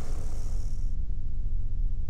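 A steady low background hum or rumble with no distinct event, the same noise floor that runs under the narration.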